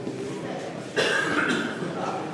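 A person coughing once, loudly, about a second in, over low background voices.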